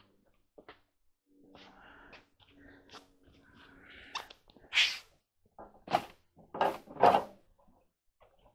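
Faint handling noises, then a short sharp breathy burst about five seconds in, followed by a few brief vocal sounds from a person.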